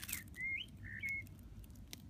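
A bird chirps twice, two short rising notes about half a second apart, with a couple of faint clicks around them.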